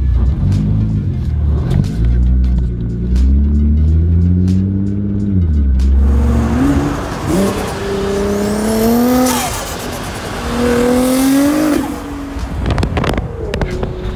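Nissan GT-R R35's twin-turbo V6 revving and accelerating, its pitch climbing in repeated pulls and dropping between them. From about six seconds in it pulls hard on the road with a rush of wind and road noise.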